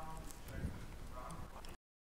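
Faint, distant voice of an audience member asking a question off-microphone, heard thinly through the room over low room noise; the sound cuts out completely near the end.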